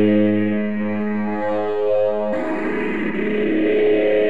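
Distorted electric guitar played through effects, a held note ringing with long sustain, then a new chord struck abruptly a little over two seconds in.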